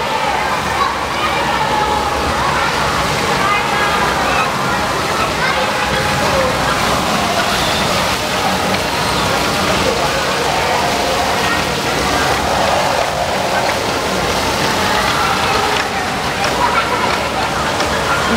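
Several water jets from mounted fire-hose nozzles spraying and splashing against a building wall, a steady rushing spatter, with children and adults chattering around it.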